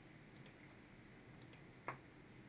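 Near silence broken by a few faint clicks of small cardstock pieces being handled on a tabletop: two pairs of light high ticks, then one slightly louder tap near the end.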